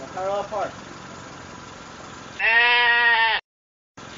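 A sheep bleats once, loud and drawn out for about a second, from a little past the middle, and cuts off abruptly into dead silence. A short pitched call sounds near the start. A steady low car-engine hum runs underneath.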